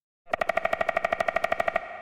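Synthesized woodpecker drumming from an Xfer Serum patch, made by an LFO sweeping the wavetable and reverb filter faster than ten times a second. A rapid, even train of pitched pecks, about fifteen a second, lasts about a second and a half and ends in a short ring.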